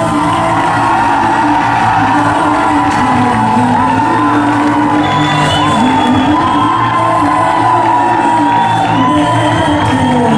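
Pop dance track with a sung vocal line over a steady bass, played loud through a hall's sound system.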